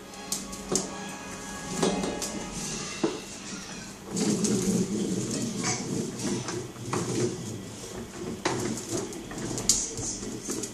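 Hard plastic wheels of a toddler's ride-on toy car rattling and clattering over a tile floor as it is pushed along, with sharp knocks, getting busier from about four seconds in. Music plays faintly underneath.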